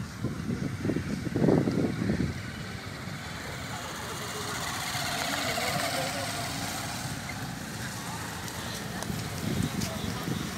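Tractor engine running steadily, growing louder through the middle and then easing off, with indistinct voices in the first two seconds and again near the end.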